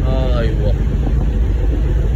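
A motor yacht under way: a steady low rumble of engine, water and wind buffeting the microphone. A short voice call is heard in the first half second.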